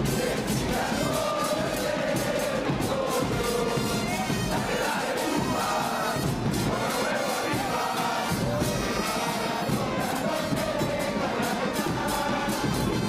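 A large crowd of football supporters singing a chant together in unison, backed by brass instruments and drums keeping a steady beat.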